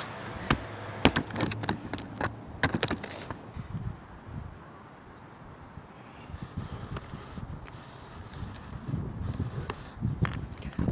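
A bicycle being set down and handled on an asphalt-shingle roof: a run of sharp clattering knocks over the first three seconds, then fainter scattered knocks.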